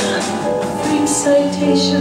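Live jazz cabaret music: a sung phrase ends at the start, then piano chords come in over a held low bass note from the accompanying piano, upright bass and drums.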